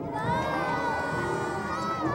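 Young voices cheering and shouting on stage, led by one high voice holding a long scream that dips slightly near the end.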